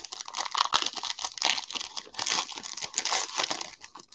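Foil wrapper of a football trading-card pack crinkling and tearing as it is ripped open by hand, a continuous run of fine crackles.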